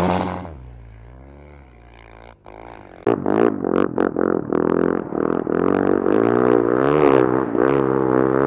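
Husqvarna 450 snow bike's single-cylinder four-stroke engine revving up and down. It drops away to a faint drone for about two seconds, then comes back suddenly loud and close about three seconds in, revving hard with scattered sharp crackles.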